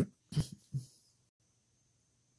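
A man coughing twice, briefly, in the first second.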